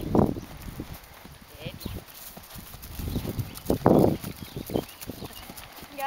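Ridden horse trotting on a grass and dirt track: its hooves clip-clop on the soft ground, fainter in the middle, with one short, louder sound about four seconds in.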